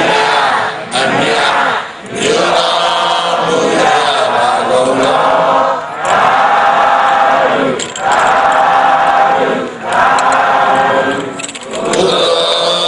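A large crowd of Buddhist monks and lay devotees chanting together in unison, in sung phrases of about two seconds with brief pauses between them.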